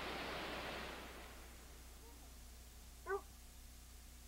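Faint background hiss fading away in the first second as the recording winds down, leaving a low steady hum. About three seconds in there is one brief high squeak, like a small child's voice.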